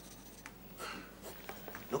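Faint scratching of a pen writing on paper, with a small click about half a second in.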